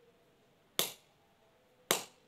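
Empty plastic water bottle squeezed in the hands, its thin wall giving two sharp pops about a second apart.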